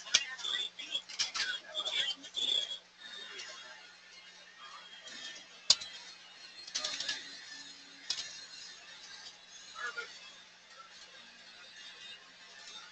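Computer keyboard typing and mouse clicks, a few sharp clicks scattered through, busiest in the first few seconds, over a faint steady electrical hum.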